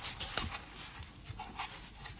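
A man's heavy, uneven breathing in short breaths, with small rustles and knocks in between.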